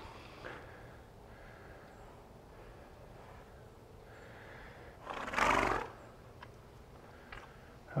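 A Welsh pony gives one short, loud snort through its nostrils about five seconds in, lasting under a second.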